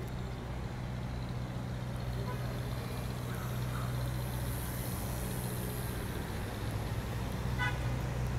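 City traffic: a steady low rumble of idling and passing car and bus engines, with one short car-horn toot near the end.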